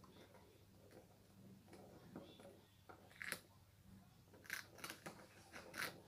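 A hamster nibbling and chewing a piece of hamster muffin: faint, with a few short crunchy bites about halfway through and a cluster of them near the end.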